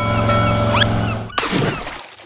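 Edited-in comic sound effects for a boat sinking. A steady low droning tone with a quick rising whistle in the middle cuts off after about a second and a half, and a short rush of splashing noise fades out.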